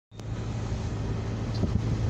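Car running on the road, heard from inside the cabin: a steady low engine hum with an even wash of road and wind noise. There is a short click right at the start.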